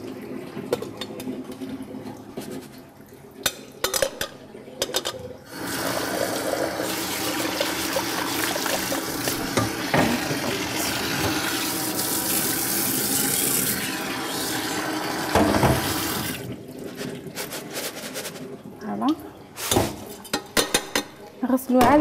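Kitchen tap running into a stainless steel bowl as rice is rinsed under it to wash off its starch, a steady rush of water lasting about ten seconds in the middle. Before and after it come a few knocks and clinks of bowls being handled.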